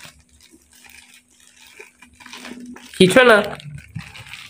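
A mostly quiet room with a faint steady low hum and small faint handling noises, then a short burst of a person's voice about three seconds in.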